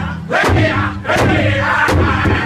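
Powwow drum group at a large hand drum: the sustained singing has just stopped, and a few spaced drum strikes sound among whoops and shouts from the singers and crowd.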